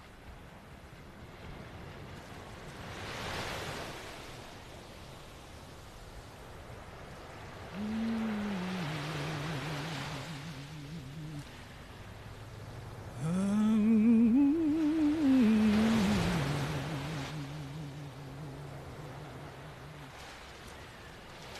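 Ocean waves washing in slow swells several seconds apart, with a low voice moaning a slow, wordless tune over them from about eight seconds in. A second, louder moaned phrase rises and falls near the middle.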